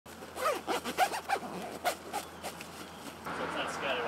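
Zipper of a fabric duffel bag being pulled in a series of short strokes, then a change to a steady outdoor background with faint voices near the end.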